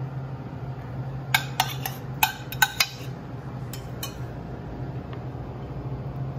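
Metal spoon and tongs clinking against a ceramic bowl and a stainless steel pan while pasta is plated: a quick run of about eight sharp clinks in the middle, over a steady low hum.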